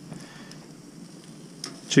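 Chicken pieces sizzling faintly on a hot portable grill grate, with a soft click of metal tongs near the end.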